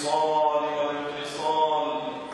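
A man's voice reciting in a drawn-out, chanted style into a microphone: two long, held phrases.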